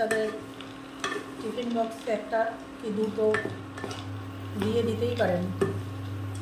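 Wooden spatula stirring and scraping a pan of chopped dry fruits, nuts and seeds as they fry, with a few sharp knocks of the spatula against the pan. A wavering pitched sound runs in the background, and a steady low hum joins about three and a half seconds in.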